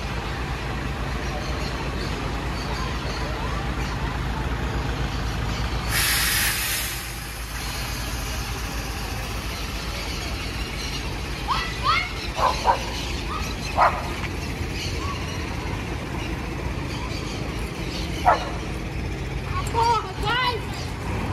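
Diesel engine of a midi coach running as the bus pulls away, with a loud burst of air-brake hiss about six seconds in.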